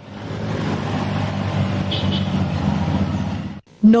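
Vehicle engine running with road noise as an ambulance van drives close past, steady throughout and cut off abruptly near the end, with no siren.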